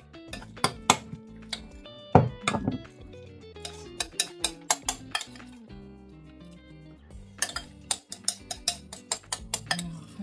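Metal spoon clinking and scraping against glass bowls in quick runs of taps as a creamy dessert is scooped out and served, over background music.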